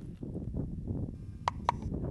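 Low wind rumble on the microphone, with two sharp clicks in quick succession about one and a half seconds in.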